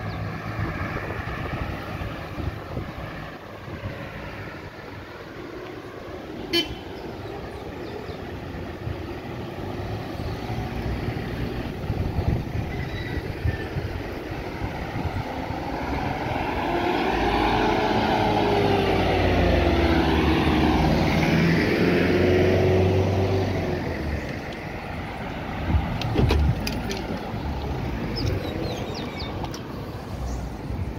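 Road traffic passing close by, cars driving past on a highway. A little past halfway through, a louder vehicle goes by for several seconds, its engine note falling and then rising again as it passes.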